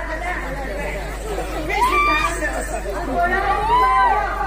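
Voices of stage performers talking and calling out through a microphone and PA, with two drawn-out rising-and-falling calls, over a steady low hum.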